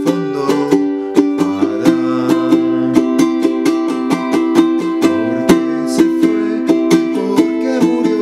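Oli Loa tenor ukulele strummed in a steady down-down-up-up-down-up pattern, changing chords from F major to C major and then A minor.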